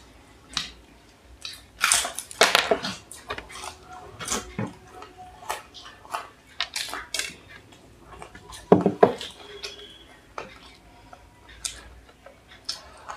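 Close-miked eating sounds at a laden table: crunching and chewing of fried samosas, with knocks and clinks of clay chai cups and plates. These come as irregular sharp crackles, loudest about two seconds in and again near nine seconds.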